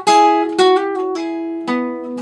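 Steel-string acoustic guitar playing a short fingerpicked lick: a quick run of about six single notes that ring into one another.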